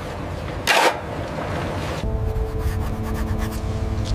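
Steel shovels scraping into a heap of wet concrete, one sharp scrape about a second in. About halfway through, this gives way to music: a low, sustained chord held over a steady rumble.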